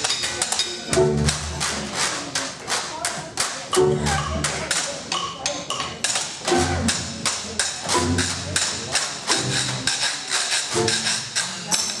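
Traditional jazz band playing, with a washboard keeping a steady rhythm of sharp scraping clicks, about four or five a second, over intermittent bass notes.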